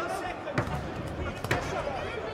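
Two sharp thuds during an amateur boxing exchange, about a second apart, over shouting voices in the hall.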